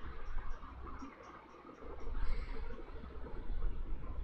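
Quiet background hum and hiss, with a few faint small ticks in the first second or so.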